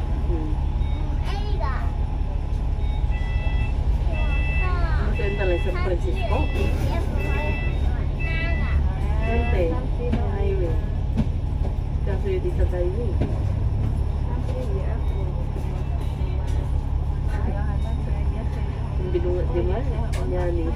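A KMB Alexander Dennis Enviro500 MMC double-decker bus idling at a stop, its engine a steady low hum. From about three seconds in, a row of about ten short electronic beeps sounds, roughly one every 0.7 s, until about nine and a half seconds in. Voices can be heard over it throughout.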